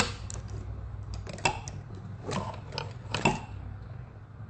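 A phone being handled and repositioned: scattered short clicks and knocks of hands on the handset picked up by its own microphone, over a steady low hum.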